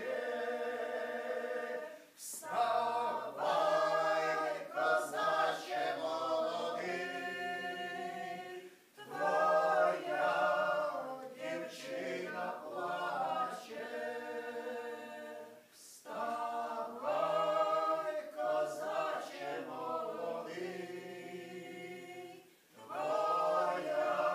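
A small mixed group of men's and women's voices singing a Ukrainian riflemen's folk song a cappella, in long sung phrases with a brief breath between them about every seven seconds.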